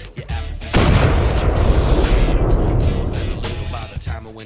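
Explosion sound effect: a sudden loud blast about a second in that rumbles on for a couple of seconds and fades near the end, over background music.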